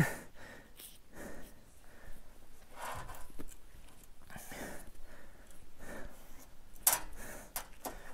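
A man breathing quietly and unevenly with effort, in soft swells every second or two, while pulling a coyote pelt down off the carcass by hand. A brief sharp rustle about seven seconds in.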